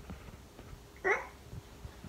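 A baby's short, high-pitched squeal that rises in pitch, about a second in, with small knocks and rustles of movement around it.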